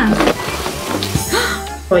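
Plastic knob of a toy capsule-vending machine being turned, scraping and rattling as it works loose a capsule that keeps sticking, with a sharp click about a second in as the capsule drops into the chute. Background music plays underneath.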